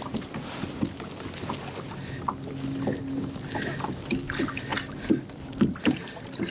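Sounds aboard a fishing kayak while a hooked salmon is played: a steady low hum, strongest in the middle, over water noise, with scattered short clicks and knocks from rod and gear handling.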